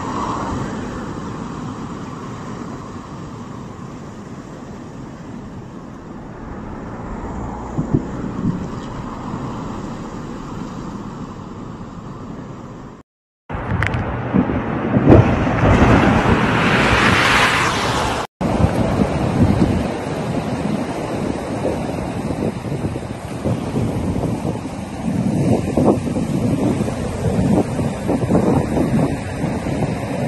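Cyclone-driven storm waves breaking against a seawall and shore, with strong wind buffeting the microphone. The sound cuts off abruptly twice, about 13 and 18 seconds in; between the cuts it is louder and hissier, with spray close by.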